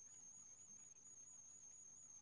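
Near silence, with a faint, steady high-pitched whine.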